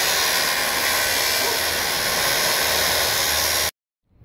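Handheld power saw cutting through 2-inch square steel tubing: a loud, steady noise of blade on metal that stops abruptly shortly before the end.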